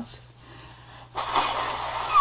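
A person sneezing once about a second in: a loud, breathy burst lasting about a second.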